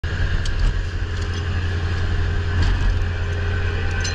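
Fishing boat's engine and deck machinery running with a steady low drone and a constant higher whine above it, with a few light clicks.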